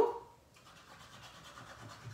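Faint scratching of a liquid glue bottle's applicator tip dragged in a zigzag across cardstock as the glue is squeezed out.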